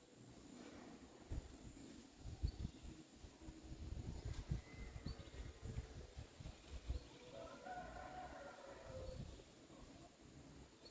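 Faint outdoor background: an uneven low rumble like wind on the microphone, with a faint drawn-out call in the distance about seven to nine seconds in.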